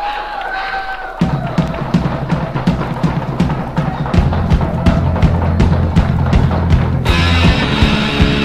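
Hardcore punk band starting a song: a wavering whine at first, then bass and drums come in about a second in, the music builds and grows heavier, and the full band gets louder and brighter about a second before the end.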